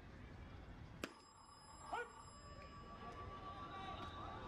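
A pitched baseball arriving at home plate: one sharp crack about a second in, followed just under a second later by a short shouted call.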